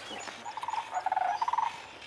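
Sandhill crane calling: one rattling call of rapid pulses, about a second long, starting about half a second in.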